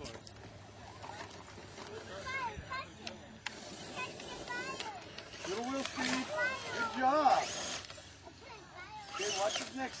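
Indistinct voices talking in the background, over the faint whir of a radio-controlled rock crawler's small electric motor and gears as it creeps down a rocky slope.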